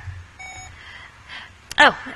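A single short electronic beep, about a third of a second long, over a low steady hum.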